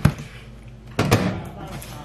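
Microwave oven door shutting with a sharp clunk, followed by a second knock about a second later.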